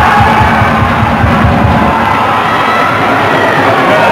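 Football crowd singing and chanting in the stands, loud and close to the microphone, over a constant low rumble.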